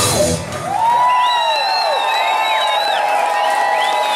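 A rock band ends a song on a final cymbal crash, and the drums and bass cut out about half a second in. An electric guitar note is left ringing while the audience whoops and whistles, with long rising and falling whistles.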